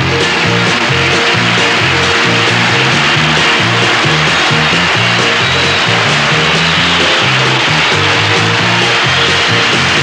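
Live rock and roll band playing loud and steady: electric guitar and drums over a stepping bass line.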